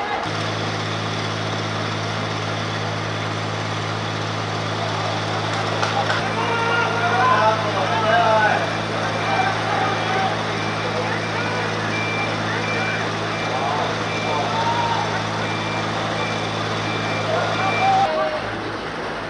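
A steady low engine hum, like a vehicle idling nearby, with a single high electronic beep repeating at an even pace from about halfway through. Scattered shouts from players come over it.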